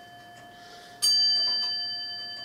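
A 225-year-old longcase (grandfather) clock striking nine on its bell: the ring of one blow fading away, then a fresh strike about a second in that rings on and slowly dies down.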